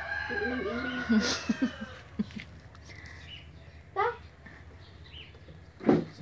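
Quiet talking and a young child's short vocal sounds. There is a brief rising call about four seconds in.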